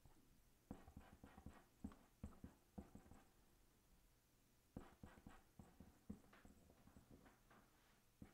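Faint, irregular taps and dabs of a small paintbrush working grey paint on a palette, in short clusters.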